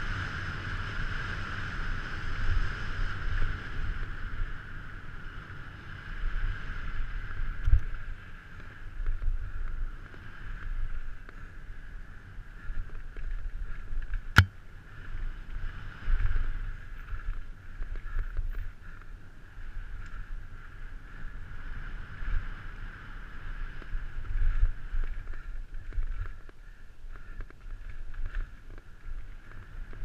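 Wind rush and low rumble on a helmet-mounted camera during a fast downhill mountain-bike run, with the bike's irregular thumps and rattles over rough dirt trail. A single sharp click about fourteen seconds in.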